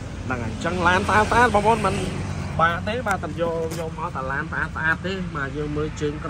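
Continuous speech over a steady low hum of the kind an idling vehicle engine makes.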